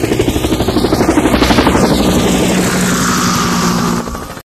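Outro logo sound effect: a rapid fluttering pulse of about ten beats a second under a swelling whoosh that peaks about a second and a half in. It settles into a steady low hum near the end.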